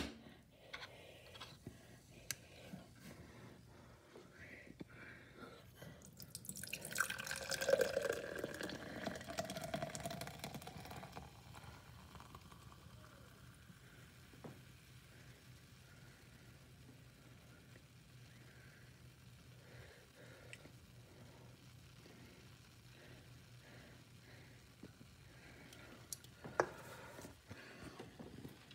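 Carbonated soda poured from an aluminium can into a tall drinking glass: splashing liquid whose pitch rises as the glass fills, followed by a faint fizzing hiss with small crackles as the foam head settles.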